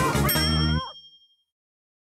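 Closing theme music that stops abruptly under a final bell-like ding, which rings out briefly before total silence.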